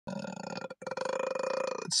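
A man's low, buzzy vocal sound held at one steady pitch, in two stretches with a short break a little under a second in.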